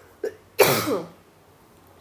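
A person coughs once, sharply, with a small catch in the throat just before it.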